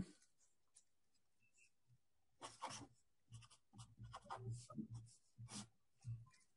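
Faint writing: a run of short, uneven scratchy strokes begins about two and a half seconds in, after near silence.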